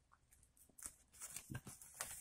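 Near silence with a few faint rustles and ticks as a strip of tape is handled and pressed against a camera body.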